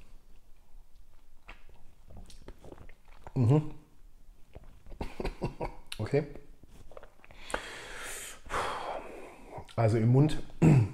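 A man coughing and clearing his throat in short bursts, with a long breathy exhale in the second half, after a sip of whisky went down the wrong way.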